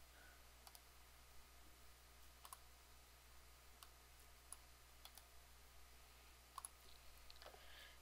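Near silence with about five faint computer mouse clicks, spaced unevenly.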